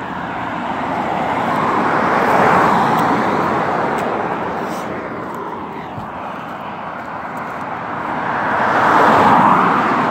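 Two cars passing on a road, each swelling and fading in a rush of engine and tyre noise, the first loudest about two and a half seconds in and the second near the end.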